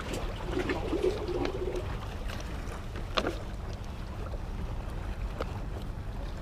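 Steady low rumble of wind and water around shoreline rocks, with a few light clicks and knocks, the sharpest about three seconds in.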